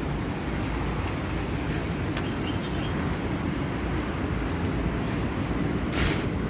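Steady low rumble of city street noise, with a faint click about two seconds in.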